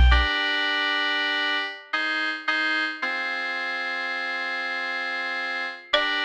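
Trap beat instrumental in a breakdown: the 808 bass and drums stop just after the start and sustained synth chords play alone, with two short stabs about two seconds in followed by a long held chord.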